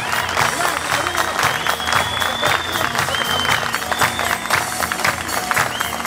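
Theatre audience applauding, with several long high whistles over it and music underneath.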